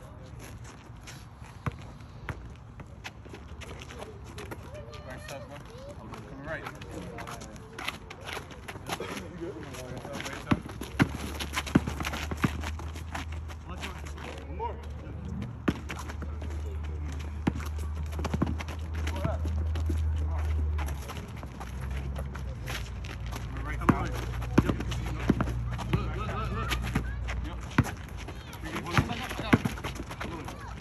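Sounds of a pickup basketball game on an asphalt court: a basketball bouncing, sharp knocks and running footsteps, and players' voices calling out, too indistinct to make out. A low steady rumble comes in for about ten seconds in the middle.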